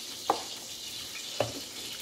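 A spoon stirring beaten raw eggs in a plastic bowl, with two brief scrapes against the bowl, over a steady faint hiss.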